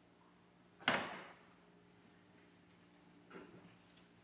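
Equipment handled on a pastry work table: one sharp knock about a second in that rings briefly, then a softer knock near the end.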